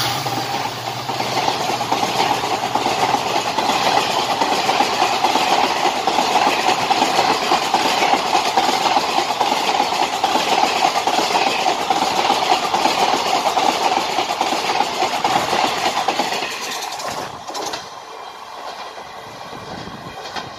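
Passenger coaches of an express train rushing past close by at speed: a loud, steady rumble of wheels on rails, with the clatter of wheels over rail joints. The noise falls off sharply about sixteen seconds in.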